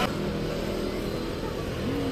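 Outdoor street traffic noise: a steady low rumble of road vehicles.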